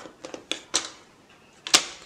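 Light clicks and clacks from a Stampin' Up! paper trimmer and the small cardstock strip as the strip is scored and handled, with one sharper click near the end.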